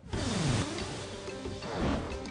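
A sudden rushing splash of water that starts at once and fades over about a second and a half as a diver goes in, with background music underneath.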